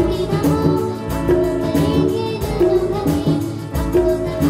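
A young girl singing a Hindi film song into a microphone over a live band, with a steady percussion beat and keyboards.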